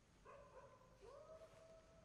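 A dog howling faintly: two long, held howls, each rising at the start, the second beginning about a second in.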